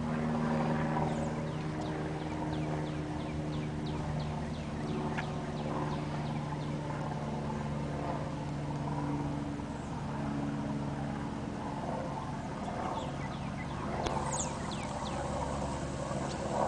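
Vehicle engine idling steadily, with birds chirping over it in quick, downward-sliding high notes. Near the end, a brief metallic rattle of wire-mesh panels.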